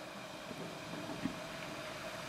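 Quiet room tone between remarks: a faint steady hiss with a small tick about a second in.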